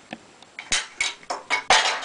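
Hard plastic pieces of an action figure clicking and clattering against a metal radiator, a string of sharp knocks starting about a third of the way in and bunching up near the end, as a piece slips and falls down behind the radiator.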